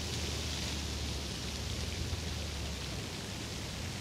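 Steady outdoor background hiss with no distinct events, and a low hum underneath that drops away about three seconds in.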